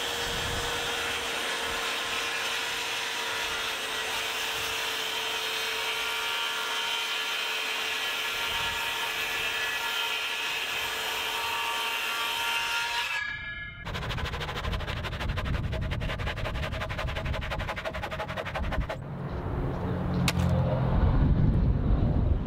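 DeWalt circular saw cutting through a thick reclaimed wood board, a steady whine with several held tones. It cuts off about 13 seconds in, and a different power tool takes over with a fast, even rattle.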